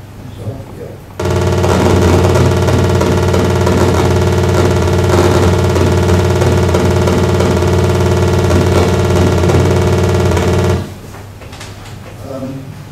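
Buzzing tone from the Pegasus simulator's emulated console loudspeaker, which sounds while the prime-tabulating program runs. It starts abruptly about a second in, holds steady and loud with a flickering texture, and cuts off near the end, about when the primes are printed.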